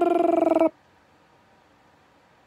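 A man's short, buzzy vocal noise held on one steady pitch for just under a second at the start.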